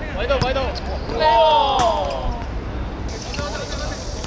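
Footballers shouting to each other on the pitch, one long call falling in pitch about a second in, with a sharp thud of the ball being kicked.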